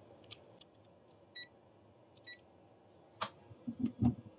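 A digital clamp meter gives two short, high beeps about a second apart as it is set up to read the current going into the inverter. Near the end come a sharp click and a few soft knocks as the clamp is handled on the battery cable.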